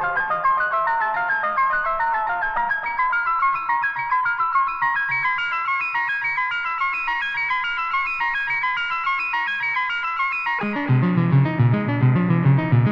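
Lo-fi electronic music from a modular synthesizer: a fast, steady stream of short, high, beeping notes. A low bass line comes in about eleven seconds in and becomes the loudest part.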